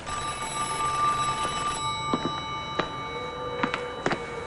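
Desk telephone ringing in one continuous, steady ring, with a few faint clicks in the second half.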